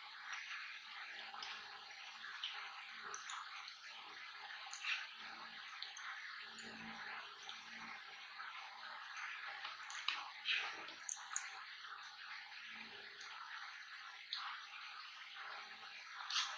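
Close-miked wet chewing and mouth sounds of a person eating fries and a burger, with scattered small clicks and smacks over a steady hiss, a few louder ones about two-thirds of the way in.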